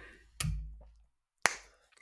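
Two sharp clicks about a second apart, the first louder with a low thump fading under it.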